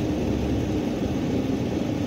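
Steady low vehicle rumble heard from inside a car cabin: an engine running, with no sharp events.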